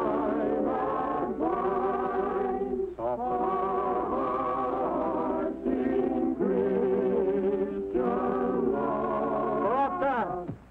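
Church choir singing a slow hymn in held, sustained phrases with organ accompaniment, in a practice run-through. The voices trail off in a falling slide at the very end.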